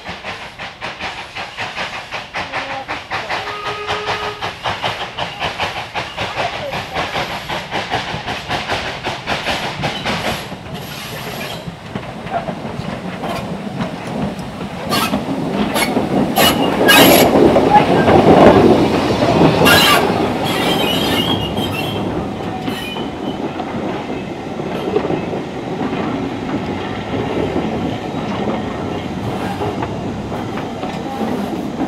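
Small saddle-tank steam locomotive approaching with a rapid beat, growing louder until it passes close by about two-thirds of the way through. Its carriages then roll past with the clickety-clack of wheels over the rail joints.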